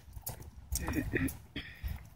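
Footsteps crunching irregularly on wood-chip mulch.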